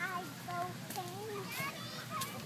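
Young children's high-pitched voices calling and chattering in short wordless bursts, the sound of kids at play.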